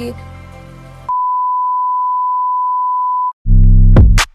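Background music fades out, then a single steady electronic beep tone holds for about two seconds, the kind of pure tone used as a censor bleep. It cuts off, and a loud, bass-heavy electronic drum beat starts near the end.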